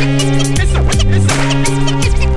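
Instrumental hip hop beat with drums and a steady bass line, with turntable scratching cut in over it and no rapping.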